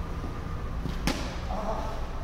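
A tennis racket striking the ball once about a second in, a single sharp pock, over a steady low rumble.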